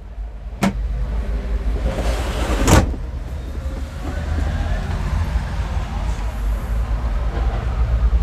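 Two sharp plastic knocks, about half a second in and again near three seconds, as the lid of a retractable cassette toilet is lifted and let down, over a steady low rumble.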